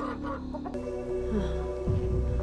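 A chicken clucking over background music, with a sound change about three quarters of a second in.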